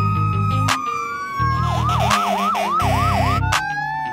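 Fire engine electronic siren, its slow wail switching to a fast yelp of about four sweeps a second in the middle, with three short blasts of an air horn.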